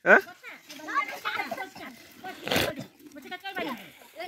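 Young children's voices, chattering and calling out over one another, with a louder noisy outburst about two and a half seconds in.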